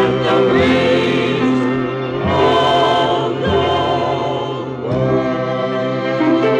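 Closing bars of a 1964 country gospel ballad played from a 45 rpm vinyl single: a backing choir holds long, wavering notes over the band, moving to a new chord about two seconds in and again near the end.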